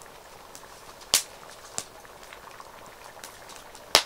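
Split-log campfire crackling with a faint steady hiss and scattered sharp pops: a loud pop just over a second in, another near two seconds, and the loudest right at the end.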